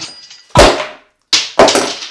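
A loud hard thud on a tabletop about half a second in, then after a brief cut-out, more sharp knocks near the end. A small vial is being struck to break it open, and it does not break.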